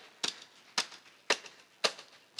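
A pair of wooden drumsticks clicked together in a steady beat, about two sharp clicks a second, four in all.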